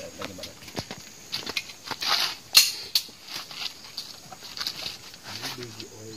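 A single sharp crack about two and a half seconds in, the loudest thing here, with a weaker one just after. Scattered light clicks and a low voice fill the rest.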